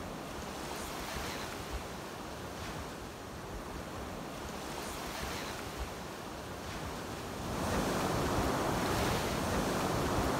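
Small sea waves breaking and washing on the shore, in soft surges every couple of seconds, growing louder about seven and a half seconds in. Wind buffets the microphone with low rumbles.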